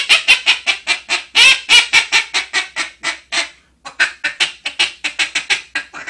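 Buck Gardner teal duck call blown with its tuning port opened for a higher pitch: rapid strings of short, high peeping notes, about seven a second, imitating teal. There is a brief break about three and a half seconds in.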